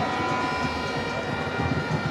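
Stadium crowd noise at a football match, with a steady, many-toned drone of fans' horns held throughout.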